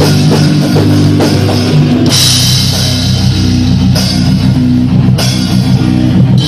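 Live heavy rock band playing loud: distorted guitars and bass over a drum kit. Crashing cymbals come in about two seconds in.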